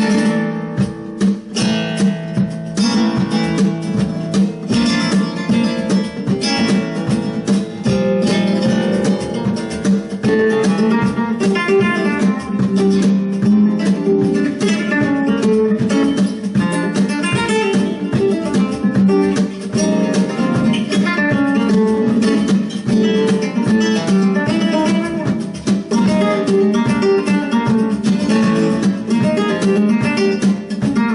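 Solo flamenco guitar playing a simple bulería sequence, strummed chords in the bulería rhythm.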